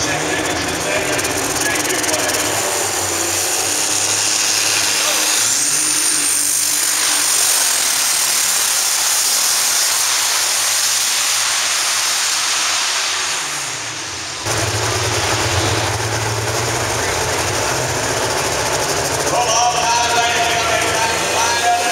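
Turbocharged diesel pulling tractor running at full throttle during a pull, with a high turbo whistle rising in pitch about six seconds in. The sound fades a little and then cuts abruptly, a couple of seconds past the middle, to a lower, steady engine note.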